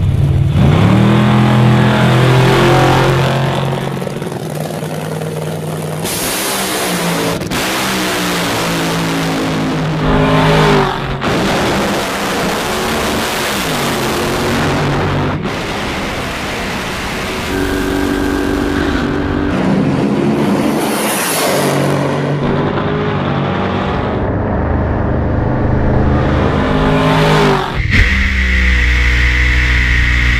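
Racing car engines at full throttle, each pitch climb broken by a sharp drop at a gear change, in several abruptly cut-together runs. Near the end the sound changes suddenly to a steadier, lower and louder engine sound from inside a drag-racing funny car.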